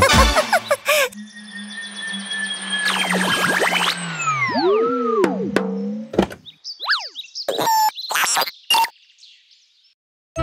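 A children's song's music ends about a second in, followed by cartoon sound effects: a held electronic tone with whistles that slide down and bounce, then a few short clicks and chirps that die away near the end.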